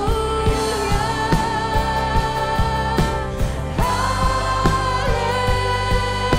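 Live worship band playing: women's voices holding long sung notes on "Alléluia" over drum kit, guitars and bass, with regular drum hits. The sung melody steps up in pitch about four seconds in and again a second later.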